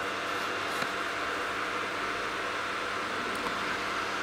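A small cooling fan running with a steady, even whir and no change in speed.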